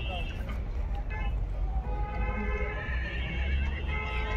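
A horse whinnying about two to three seconds in, over a steady low rumble and the general noise of a busy fair.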